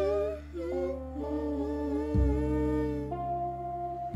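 Music: a voice humming a wordless melody in long, slightly wavering held notes over deep sustained bass notes, with a new bass note coming in about two seconds in.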